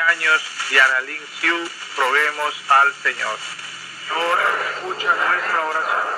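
A Spanish-language religious broadcast, Radio Maria, talking from the small speaker of a pocket FM/SCA receiver tuned to the 92 kHz subcarrier of an FM station, with a steady high hiss behind the voice.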